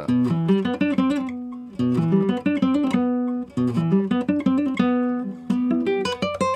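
Nylon-string classical guitar played fingerstyle: a gypsy-jazz waltz in arpeggios, one note per string plucked with thumb, index, middle and ring fingers. Four arpeggio figures, each left to ring before the next.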